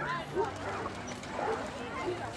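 Faint, short dog barks and yips, a few scattered calls, with low murmuring voices in the background.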